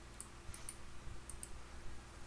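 Faint, light clicks at a computer, about five of them, some in quick pairs, as the presentation slide is advanced.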